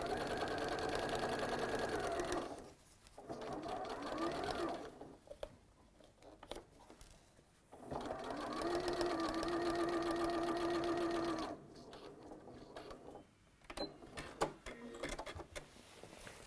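Electric domestic sewing machine stitching a seam through cotton fabric in three runs: one of about two and a half seconds, a short one, then another of about three and a half seconds, with pauses between. Light clicks and fabric handling follow near the end.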